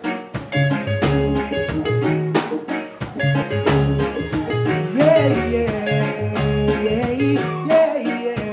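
Live reggae band playing the intro of a song, with a deep, repeating bass line, drum kit, electric guitar and keyboard. From about five seconds in, a wordless voice slides up and down over the band.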